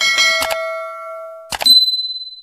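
Sound effects of an animated subscribe button: a bell-like chime with several tones that fades over about a second and a half, then a click and a single high, bright ding that rings on.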